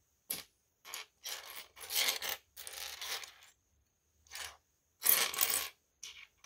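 Loose plastic LEGO pieces clattering and scraping against one another on a wooden tabletop as a hand rummages through the pile. It comes in a series of short rattles, the loudest about two seconds in and again near the end.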